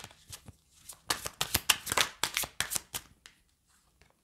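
A small deck of cards shuffled by hand: a quick run of papery riffles and clicks, thickest in the middle and thinning out near the end as a card is drawn.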